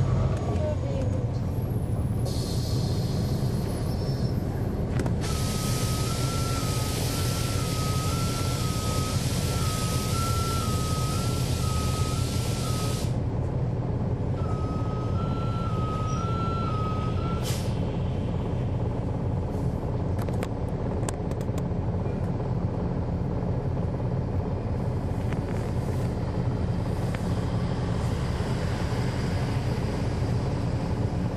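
Cabin sound of an NJ Transit NABI 40-SFW transit bus, its Cummins ISL9 six-cylinder diesel running with a steady low drone. About five seconds in, a loud air hiss from the bus's air system runs for about eight seconds, with an alternating two-note warning beep over it; after a short gap the beeping returns for about three seconds and ends with a brief hiss, after a shorter hiss a few seconds earlier.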